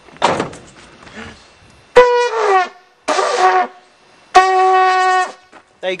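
Brass bulb horn mounted on a van's wing mirror, squeezed by hand three times. The first honk falls in pitch, the second is short, and the third is longer and steady.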